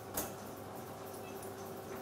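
Quiet room tone: a faint steady hum with one short click just after the start.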